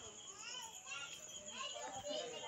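Faint children's voices chattering and calling in the background.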